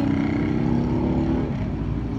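A motor engine running nearby: a steady low rumble with a droning tone that drops away about one and a half seconds in.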